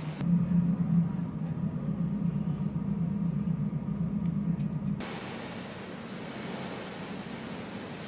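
A steady low engine rumble, like a motor boat's, for about five seconds. It then cuts off abruptly to an even hiss of wind and sea.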